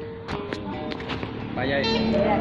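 Acoustic guitar playing slow, ringing single plucked notes, with a voice coming in near the end.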